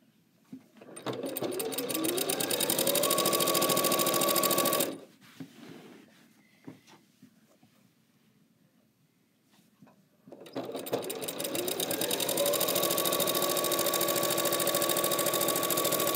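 Janome sewing machine stitching quilt binding in two runs. It starts about a second in, speeds up with a rising whine, runs steadily and stops near five seconds; after a quiet pause with a few faint clicks it starts again about ten seconds in, speeds up and runs on steadily.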